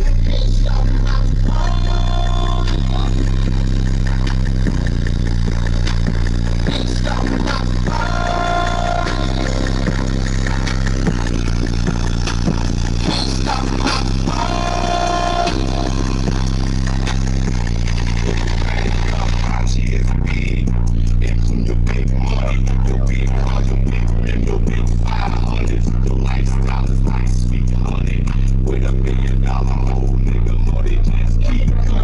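Very loud bass-heavy music played through a car audio system with URAL subwoofers, heard at the open door of the car: deep sustained bass notes that shift every few seconds under the track.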